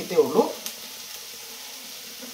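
Food frying in a wok on the stove, a steady sizzle, with a single light clink about two-thirds of a second in.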